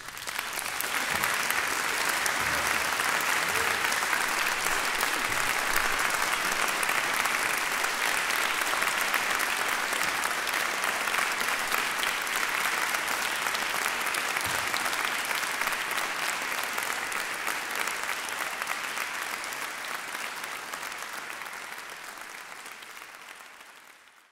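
Concert audience applauding steadily, the clapping dying away near the end.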